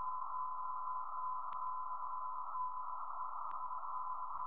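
Meteor-radar receiver audio: a steady, unbroken tone over a narrow band of radio static, with a couple of faint clicks. This is an unusually long echo, which the uploader takes for either an extremely big meteor burning up in the atmosphere or something he can't identify.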